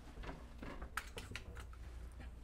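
A run of light, irregular clicks and taps, a few to the second, over a low steady room hum.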